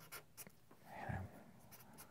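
Felt-tip Sharpie marker drawing on paper in short, faint strokes. A brief faint hum-like sound, likely a murmur from the person drawing, comes about halfway through.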